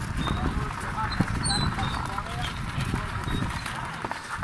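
Donkey-drawn cart moving on a gravel track: the donkey's hooves clopping and the cart's wheels rumbling and crunching over the stones, with faint voices in the background.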